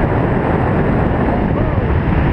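Loud, steady wind rushing over a GoPro's microphone on a paraglider pilot in flight.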